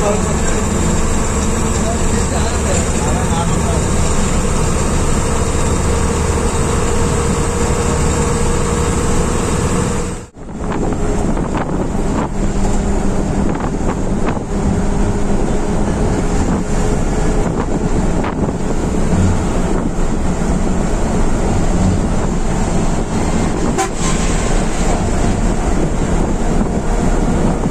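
Sleeper bus engine running at cruising speed with steady road and wind noise, heard from inside the driver's cabin. The sound drops out sharply for a moment about ten seconds in, then carries on much the same.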